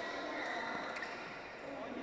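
People talking across a badminton hall, with a couple of sharp knocks from the play, about half a second and a second in.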